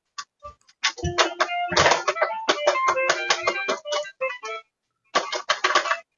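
A child's electronic toy keyboard, its keys pressed in quick, uneven runs of short electronic notes, with a brief pause near the end before another run.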